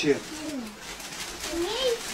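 Soft wordless vocal sounds from a person: a falling voiced sound at the start, then a short rising one about a second and a half in.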